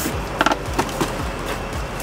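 Cardboard box being handled and shifted: scraping and rustling, with a couple of sharp knocks about half a second in. Background music with a steady low beat runs underneath.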